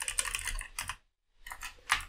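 Computer keyboard being typed: a quick run of keystrokes, a short pause about a second in, then more keystrokes.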